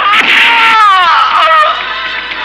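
A man crying out in pain while being beaten with a stick: one long, wavering cry that falls in pitch and fades after about a second and a half.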